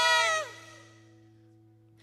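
Women's voices holding a long sung note that slides down in pitch and stops about half a second in. After that only a faint steady hum remains.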